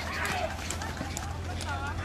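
Spectators' voices calling and shouting while a ridden water buffalo gallops along a dirt race track, with the scattered beats of its hooves. A steady low hum runs underneath.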